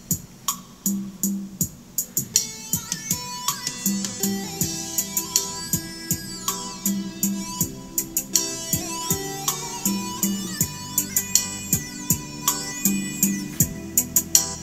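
Instrumental intro of a song, plucked guitar over a steady beat, played back through a JBZ 107 trolley karaoke speaker with a 25 cm woofer as a listening test.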